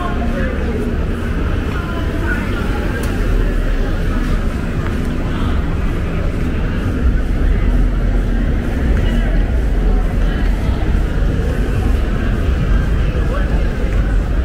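Night street ambience: cars driving slowly past with a steady low engine and tyre rumble, under indistinct voices of people nearby.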